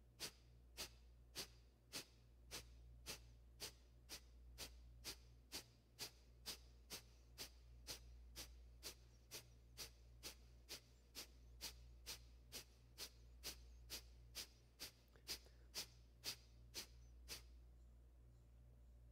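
Kapalabhati breathing: a steady run of short, sharp, forceful exhalations through the nose, about two a second, stopping shortly before the end.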